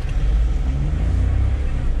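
Car cabin noise while driving: steady low engine and road rumble, with the engine note rising a little in the middle.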